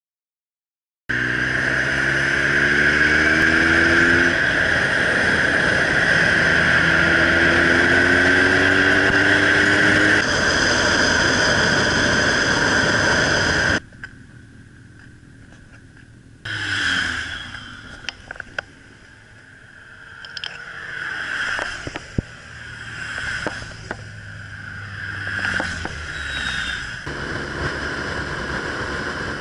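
Motorcycle riding heard from an onboard camera: engine and wind noise, starting about a second in, with the engine pitch rising twice as it accelerates. After a sudden cut about halfway through, the riding sound is quieter and uneven, swelling and falling, with a few sharp clicks.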